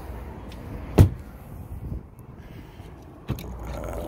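A Land Rover LR4 door shut with a single solid thump about a second in, followed by a lighter click near the end.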